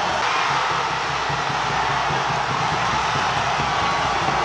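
Stadium crowd noise: a steady din of many voices from the stands.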